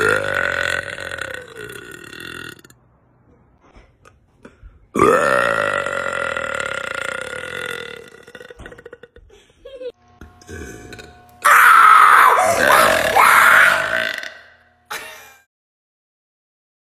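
A woman's long, loud burps: two drawn-out burps of two to three seconds each, one at the start and one about five seconds in, then a louder, harsher burst of sound about eleven seconds in.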